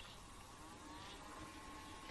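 Near silence: a faint steady background hiss with a very faint steady tone.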